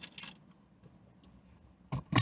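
A few faint short clicks and rustles from a paper fountain-drink cup and straw as it is sipped from, then a near-quiet car interior, with one more short click just before the end.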